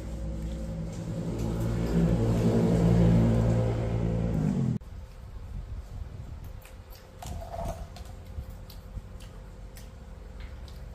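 A steady motor-like drone, growing louder over the first three seconds and cutting off abruptly about five seconds in, followed by faint small clicks and rustles.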